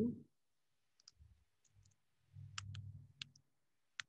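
Scattered clicks of computer keyboard keys being pressed while code is typed and edited, with a quick run of them about two and a half to three and a half seconds in.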